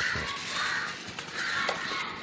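A crow cawing a few times, with aluminium foil crinkling as it is folded around a fish.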